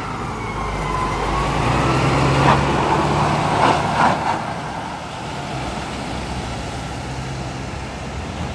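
FDNY ladder truck's diesel engine pulling away, its rumble building over the first few seconds and then easing as it recedes. A few short sharp bursts sound in the middle, and a faint tone glides down and back up in the first two seconds.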